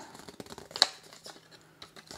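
A folded paper leaflet rustling and crackling as hands handle and unfold it, with one sharper crackle just under a second in.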